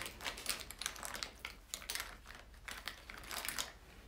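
Handling noise right at a phone's microphone: an irregular run of quick clicks and rustles, like fingers tapping and brushing the phone and fabric or hair rubbing against it, dying away shortly before the end.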